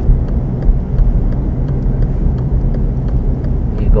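Inside a car's cabin, the engine and tyres run steadily at low speed in second gear, with the turn signal ticking faintly and regularly.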